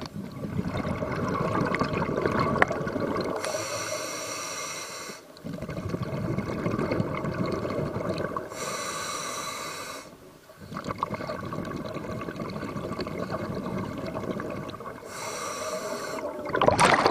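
A scuba diver breathing through a regulator underwater, about three full breaths: each in-breath is a short, high hiss through the demand valve, and each out-breath is a longer rush and rumble of exhaust bubbles. A single sharp click comes about two and a half seconds in.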